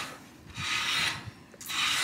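Hand sanding on a car body part under repair for a crack: two strokes, each about half a second long.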